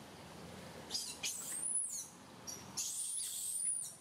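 Two high, thin animal calls, each about a second long, rising in pitch and then holding high. The first comes about a second in, the second near the end.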